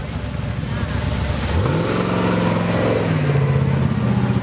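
Race buggy's engine revving hard as it climbs a hill: the pitch rises sharply about a second and a half in, holds high, and eases back a little near the end.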